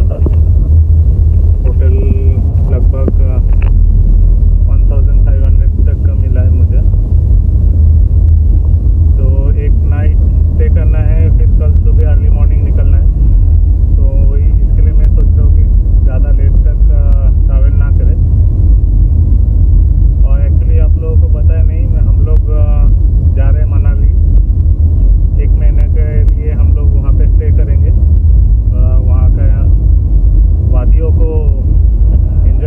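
Steady low rumble of a car on the move, heard from inside the cabin, with a man's voice talking in stretches over it.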